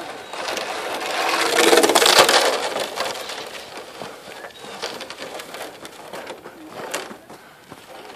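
A sled sliding over an icy road: a scraping hiss that swells about two seconds in and then slowly fades.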